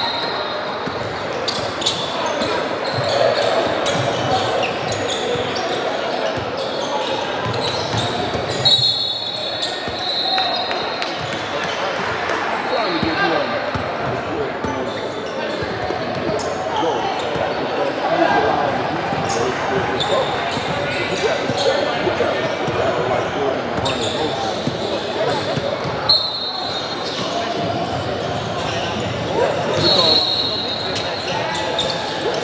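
Basketball game in a large gym: a ball bouncing on the hardwood court, a few short high sneaker squeaks, and players and spectators calling out indistinctly, all echoing in the hall.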